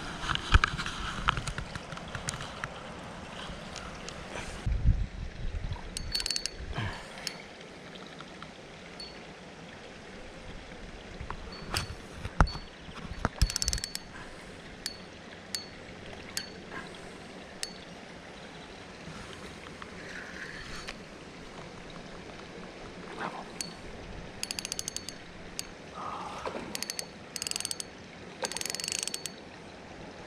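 Intermittent clicks, ticks and short rattles of fishing tackle being handled close by, a spinning reel among it, in scattered clusters with quieter gaps between.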